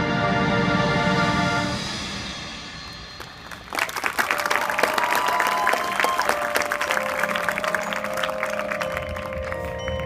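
A marching band holds a loud sustained chord that fades away over about three seconds. About four seconds in, a burst of applause breaks out and goes on over soft, ringing mallet-percussion tones from the front ensemble.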